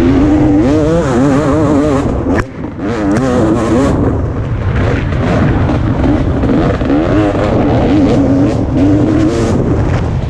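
2017 KTM 250 XC-W's two-stroke single-cylinder engine revving up and down constantly as the throttle is worked, with a brief drop in revs about two and a half seconds in.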